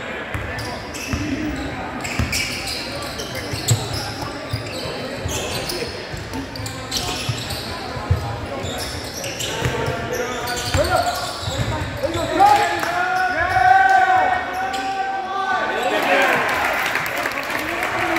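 A basketball bouncing on a hardwood gym floor during live play, with voices calling out in the gym.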